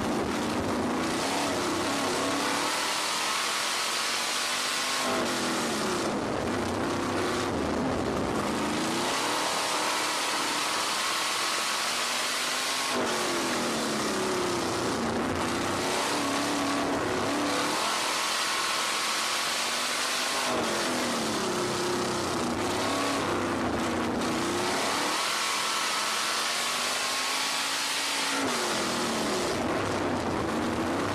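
RaceSaver 305 V8 sprint car engine heard from onboard at racing speed, its revs climbing for several seconds and then dropping off sharply, about once every seven seconds lap after lap, as it accelerates down the straights and lifts into the turns. A steady hiss runs underneath.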